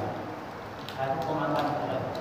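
Speech: a man talking, the words not made out.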